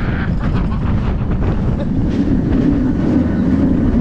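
Wind rushing over the microphone of a rider on a moving Bolliger & Mabillard dive coaster, with the low, steady rumble of the train running along the steel track.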